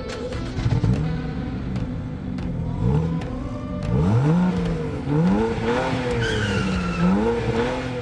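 Car engine sound effect revving up and down several times, with a short tire squeal about six seconds in, played over an animated tachometer logo.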